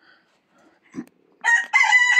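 A Pekin bantam rooster crowing: one loud crow that starts about one and a half seconds in. A brief low knock comes just before it.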